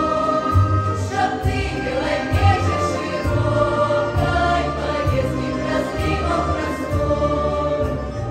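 Women's folk choir singing a Belarusian song in several voices at once through stage microphones, over a low bass accompaniment that changes note about every second.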